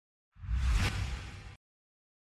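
News-bulletin transition sound effect: a single whoosh over a low bass rumble. It starts about a third of a second in, peaks quickly and fades out over about a second.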